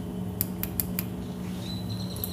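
Soda vending machine selection buttons clicking: four quick presses about a fifth of a second apart, over a steady low hum.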